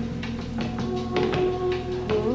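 Live trip-hop band playing an instrumental passage: held keyboard and bass notes under sharp drum hits, with no vocals.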